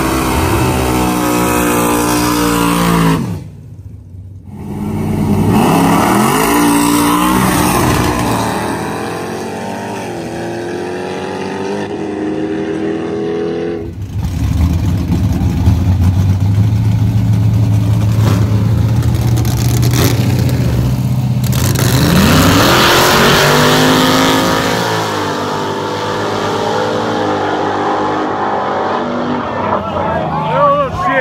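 Drag-race car engines revving hard, the pitch climbing and falling. The sound dips briefly about three seconds in, changes suddenly at about halfway, holds a steady low drone, then climbs in pitch again in the second half.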